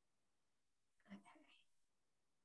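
Near silence, with a faint, brief spoken "okay" about a second in.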